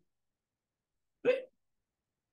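Dead silence, then a little over a second in a man makes one short voiced sound, a single syllable rising in pitch and lasting about a quarter second.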